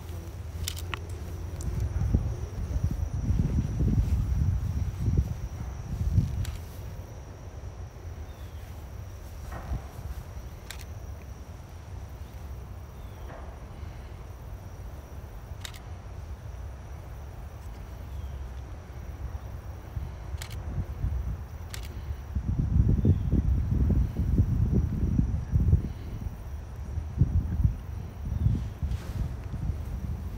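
Wind buffeting the microphone in low rumbling gusts, strongest in the first few seconds and again over the last eight, over a faint steady high whine, with a few soft clicks.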